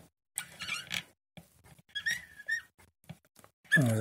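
Faint handling sounds of a small diecast model car being turned by hand on a tabletop, with a short squeak about two seconds in.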